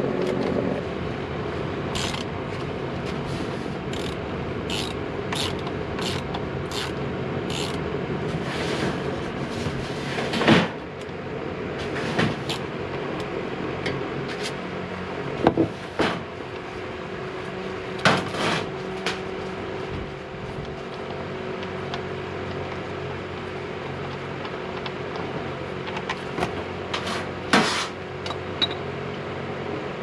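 Hand tools clicking against the oil drain plug as it is loosened for an oil change, then knocks and scrapes of a plastic oil drain pan being set in place. Engine oil drains into the pan over a steady fan hum.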